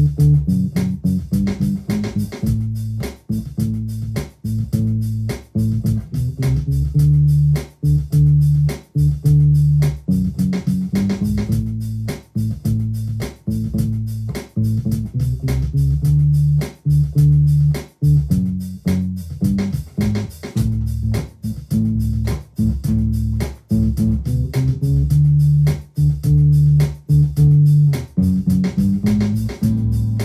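Electric guitar played on its low strings as a bass line: a run of plucked low notes, deep and bass-heavy with little treble, the riff coming round again and again.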